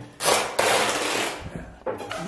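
Packing tape being pulled off the roll: a short rip, then a longer rip of about a second that fades away.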